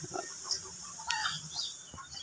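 Birds chirping in short, scattered calls over a faint steady high hiss.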